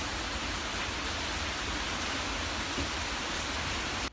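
Heavy wind-driven rain pouring steadily onto a house roof and yard: an even hiss with a low rumble underneath.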